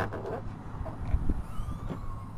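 Low rumble of wind and handling noise on the microphone, with a few light clicks in the first half second and a faint tone falling in pitch near the end.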